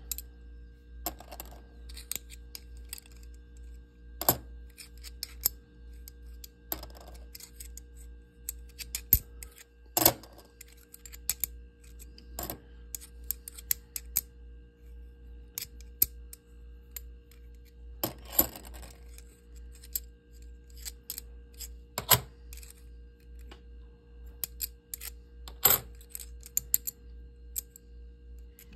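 Kennedy half dollars clicking and clinking against each other as they are flipped one by one off a hand-held stack. The clicks come irregularly, every second or two, with a few sharper clinks. A faint steady hum runs underneath.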